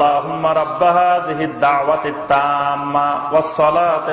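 A man's voice chanting melodically into a microphone, holding long steady notes that step from pitch to pitch with short breaks between phrases, in the style of Quranic recitation.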